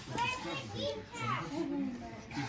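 Young girls' voices: quiet, untranscribed talk and vocal sounds, softer than ordinary speaking.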